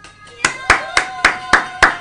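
Hands clapping: about six sharp claps in quick succession, roughly three or four a second, starting about half a second in.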